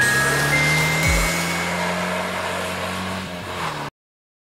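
School-bus sound effect: a rushing, engine-like noise with a steady low hum that slowly fades away over about four seconds, under the last of the music, cutting off to silence just before the end.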